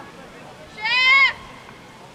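A single high-pitched shout in a female voice, about half a second long, starting about a second in, over the faint background of an outdoor soccer match.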